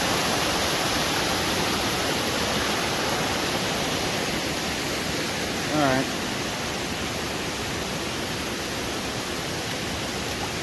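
Steady rush of a creek pouring over small waterfalls and rock cascades. About six seconds in, a man's voice makes one brief wavering sound over the water.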